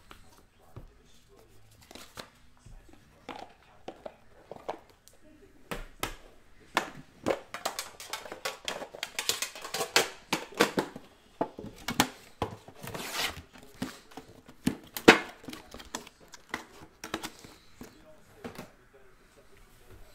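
Trading-card packaging being handled on a tabletop: plastic wrap crinkling and tearing, with many scattered clicks and taps from cards and boxes.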